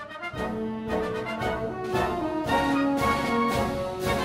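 Orchestral background music led by brass, a melody moving over held chords.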